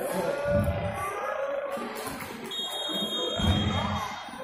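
A referee's whistle blows one steady, high note for about a second, a little past the middle, over music and the general noise of the hall.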